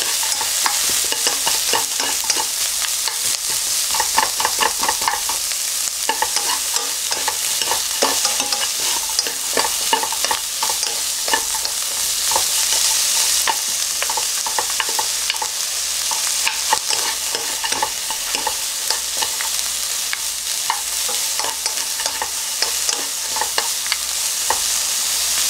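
Sliced onion, carrot and green onion sizzling in oil in a nonstick wok. Two wooden spatulas stir and toss them, with a steady hiss and frequent irregular scrapes and taps of wood on the pan.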